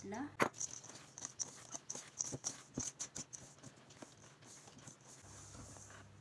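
Dry flour mixture with chopped chocolate and nuts being stirred in a stainless steel mixing bowl: irregular scraping and light clicks of the utensil against the bowl, with a sharper knock about half a second in.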